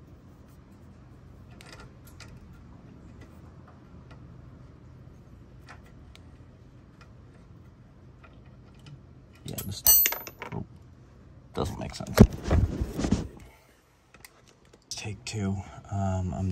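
Small metal parts clinking and rattling in hand as caps and fittings are worked onto the hydraulic lines under the car. There are faint clicks at first, then two louder bursts of clatter past the middle.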